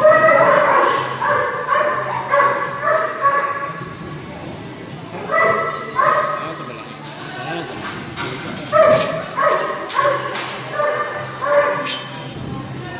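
Dog barking repeatedly in short, high-pitched yips during an agility run, in three bursts of several barks each with brief pauses between.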